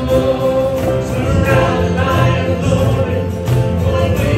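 Live worship band playing a slow song: acoustic guitars strumming under several voices singing together, with a long held note early on.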